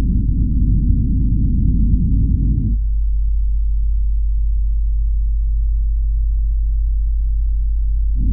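A deep, dense low rumble that stops abruptly about three seconds in. It gives way to a steady deep hum, a near-pure low tone.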